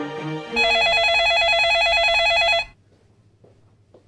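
A telephone ringing with a warbling electronic trill: one ring of about two seconds, then a pause as the line waits to be answered. A last few notes of music end in the first half second.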